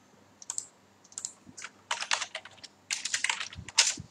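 Typing on a computer keyboard in short, irregular bursts of keystrokes.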